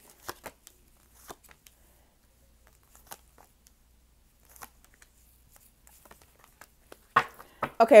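Tarot cards being shuffled by hand, heard as faint, scattered soft clicks and rustles of the cards.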